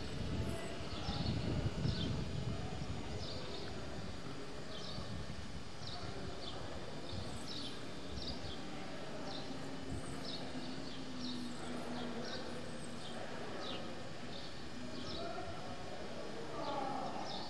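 Small birds chirping over and over, short high notes that drop in pitch, about one or two a second, over a steady outdoor background. Wind buffets the microphone in the first couple of seconds.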